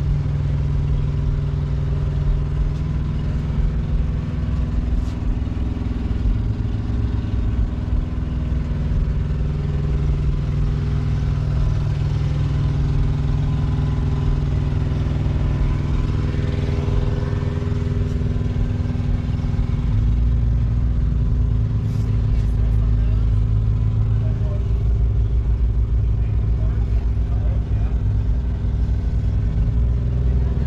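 An engine idling steadily, with voices in the background.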